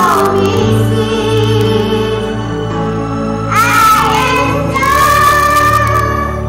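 A group of young children singing into microphones over instrumental backing music, with a long held sung note near the end.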